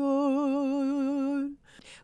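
A singing voice holding one long note with steady vibrato for about a second and a half, then breaking off abruptly.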